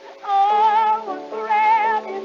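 A woman singing with vibrato over orchestral accompaniment on a 1911 acoustic recording: two held, wavering notes with a short break between them, the sound cut off above the upper treble.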